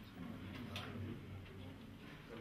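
Faint, irregular clicks of camera shutters, a few scattered over about two seconds, over a low murmur of voices in the room.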